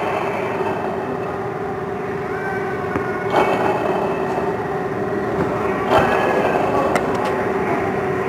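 Car engine idling with a steady hum from the AC compressor pulley, whose inner bearing is worn, swelling briefly twice.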